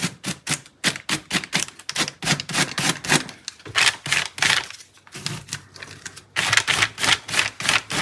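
Sponge dabbing gesso onto paper netting laid on a plastic sheet: quick soft taps, about four to five a second, in runs with short pauses between them.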